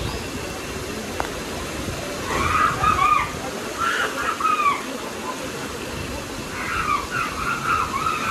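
Steady rush of river water, with distant high voices calling out in three bursts, about two, four and seven seconds in.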